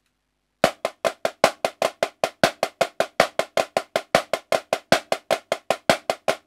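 Snare drum played with sticks: a steady stream of evenly spaced single strokes, about five to six a second, starting just under a second in, some strokes louder than others as accents. This is the choo-choo moving-rudiment 16th-note grid played at a slow practice tempo.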